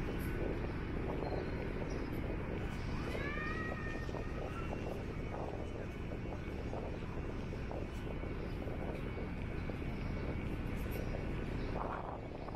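Open-air city ambience: a steady low rumble of wind and distant traffic. A short animal call, rising then falling in pitch, sounds once about three seconds in.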